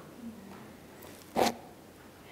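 Quiet room tone, broken about one and a half seconds in by a single brief rasp or click close to the microphone.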